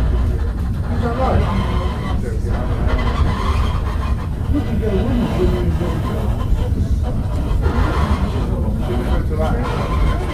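Snowdon Mountain Railway steam rack locomotive pushing the passenger carriage, heard from inside the carriage: a loud, steady low rumble, with passengers' voices over it.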